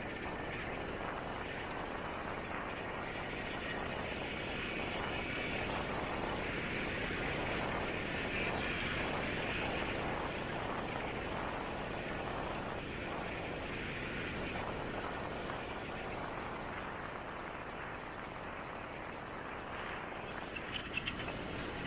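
Steady rushing noise of motor traffic, swelling a little in the middle and easing off near the end.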